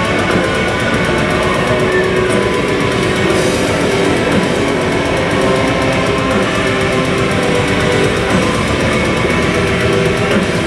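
A live heavy metal band playing loud and without a break: distorted electric guitars, bass and a drum kit.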